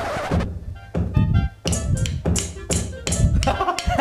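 Electronic drum kit played by a beginner: kick drum and hi-hat strikes in a rough beat, about two a second. The player is going too fast for the teacher, who has him slow down.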